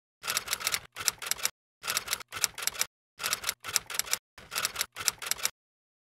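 Typing sound effect: rapid key clicks in short bursts of a few strokes each, about two bursts a second, stopping about half a second before the end.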